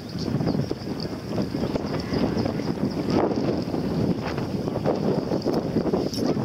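Wind buffeting the microphone: a dense low rush that swells and dips unevenly in gusts.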